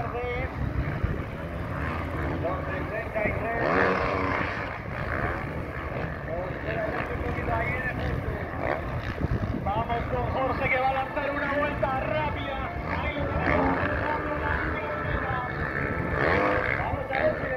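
Several motocross bikes' engines revving up and down as riders race and jump the track.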